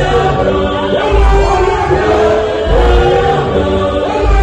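A gospel choir of men and women singing together into microphones, several voices holding notes, over a low bass note that recurs about every second and a half.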